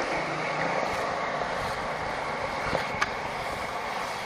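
Skateboard wheels rolling over smooth concrete: a steady rolling hiss, with a couple of light clicks near the end.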